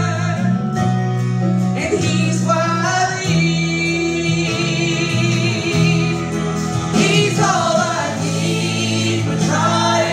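A women's gospel trio singing into microphones over amplified instrumental accompaniment, the voices held on long notes with vibrato above steady bass notes.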